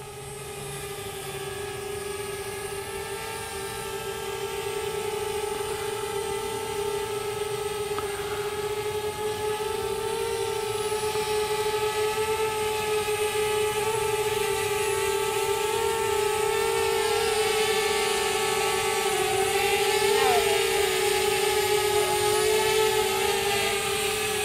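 DJI Spark mini quadcopter flying, its propellers making a steady high hum that grows gradually louder, with small wavers in pitch near the end.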